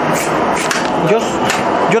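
A knife cutting the kernels off ears of white corn in quick repeated strokes, the kernels falling into a metal tub; a man says a couple of short words over it.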